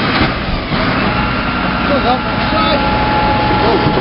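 Rear-loader refuse truck's engine and hydraulic packer running with the compaction blade stalled in an overfull body, a steady mechanical noise with a whine coming in about a second in.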